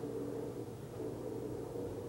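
A steady low hum with a faint hiss, even throughout.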